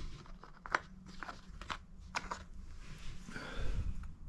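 Steel shotgun choke tubes clicking against each other and the hard plastic case as one is lifted out: about four light, sharp clicks roughly half a second apart, then a soft handling rustle near the end.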